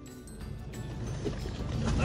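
Low rumble of a fishing boat's engine with water washing around the hull, growing slowly louder.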